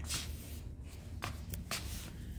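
Brief rustling and scraping handling noises, three or four short ones, over a low steady hum.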